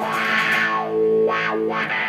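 Distorted electric guitar played through a Boss GT-100 amp/effects processor, sustained notes with the tone swept up and down several times by the unit's expression pedal, a wah-like sweep.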